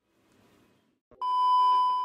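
Near silence, then about a second in a steady high-pitched television test-tone beep, the kind played over colour bars, that sounds for about a second.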